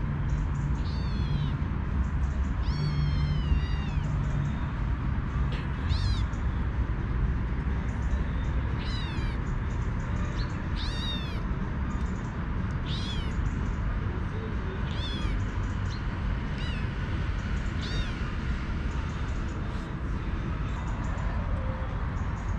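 Kitten mewing over and over in short, high-pitched calls that rise and fall, about a dozen in all, begging its mother cat to let it nurse.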